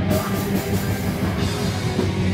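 A live rock band playing loud, heavy music with drum kit and guitar, steady and dense throughout, recorded from within the crowd.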